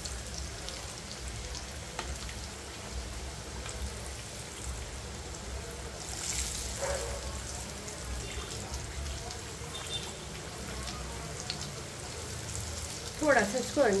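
Stuffed puris deep-frying in hot oil in a wok: a steady, soft sizzle.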